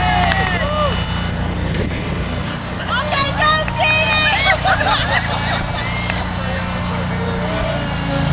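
Riding lawnmower engine running steadily, with people shouting and laughing over it; the voices are loudest for a couple of seconds around the middle.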